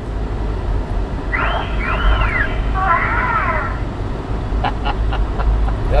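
Car driving, its steady low road and engine rumble heard from inside the cabin with the windows open. About a second and a half in there are two brief high wavering calls, and a few sharp clicks come near the end.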